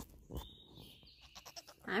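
A goat bleats briefly, with a few light rustling clicks.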